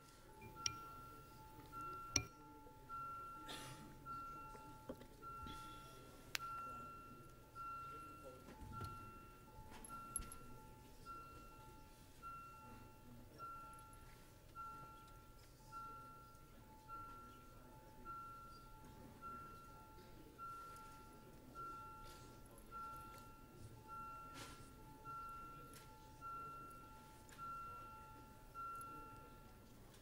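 Electronic vote-timer chime repeating at an even rate, about three soft chimes every two seconds, stopping near the end: the signal that a recorded vote is open. A few faint clicks fall in the first seconds.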